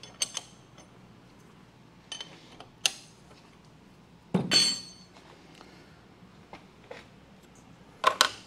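Scattered small metallic clicks and clinks of hand tools on steel machine parts, with one louder, ringing metal clink about halfway through, over a low steady shop hum.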